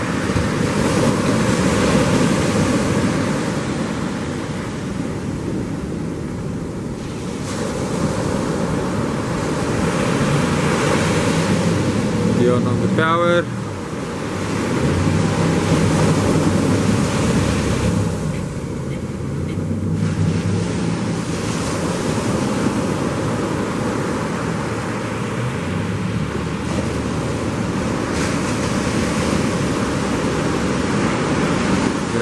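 Surf breaking and wind buffeting the microphone, with the twin outboard motors of a ski boat running under throttle as it powers out through the waves; one motor is, by the onlooker's ear, not sounding nice. A brief rising whistle-like tone cuts through about 13 seconds in.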